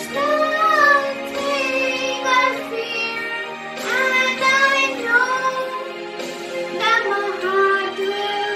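A young girl singing a melody into a handheld microphone over a sustained instrumental backing track, her voice moving in phrases of a few seconds above the held accompaniment tones.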